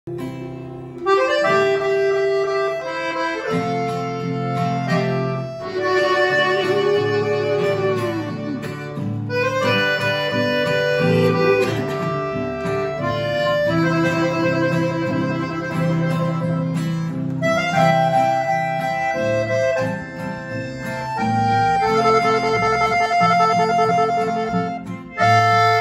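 Piano accordion playing a sustained, chordal melody as the instrumental introduction to a sertanejo modão, with an acoustic guitar strummed beneath it.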